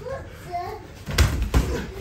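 Punches in boxing gloves landing during a kickboxing exchange: three sharp smacks in the second half, with voices in the background.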